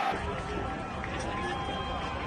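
Outdoor ambience picked up on a phone: a steady low rumble of wind on the microphone with faint distant voices.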